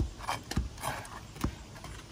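GAF asphalt shingle pried up by hand and tearing because its sealed tar strip will not let go: short rough scraping rips with a few sharp clicks.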